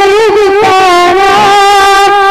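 A boy singing a Mappila song into a microphone, one unbroken line of held, ornamented notes that waver and slide between pitches, dipping a little about halfway through.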